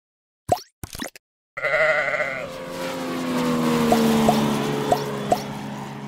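Logo sting sound effects: a few short pops, then a sheep's bleat and a held music chord that sinks slightly in pitch, with four small rising blips over it.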